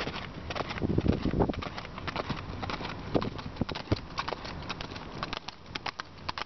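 Hooves of a ridden horse clip-clopping on an asphalt road at a trot: a quick, steady run of sharp hoofbeats.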